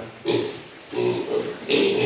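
Young piglets grunting: a short call near the start, then a few more pitched grunts after a brief pause.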